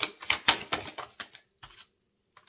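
A deck of oracle cards being shuffled by hand: a quick run of clicks for about a second and a half, then a couple of fainter ones.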